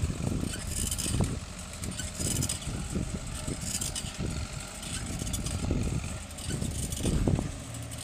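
Bicycle ridden over a rough, freshly graded dirt track, with irregular bumps and rattles as the wheels hit the loose ground, and wind buffeting the microphone.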